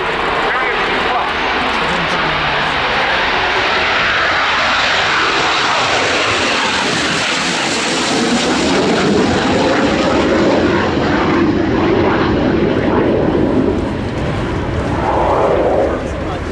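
Spanish Navy EAV-8B Harrier II's Rolls-Royce Pegasus turbofan at high power as the jet lifts off and climbs away: a continuous loud jet roar, hissing most sharply around the middle of the pass and turning to a deeper rumble as it moves off.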